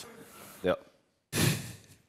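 A brief spoken "ja", then a single loud breath of about half a second, caught close to a headset microphone.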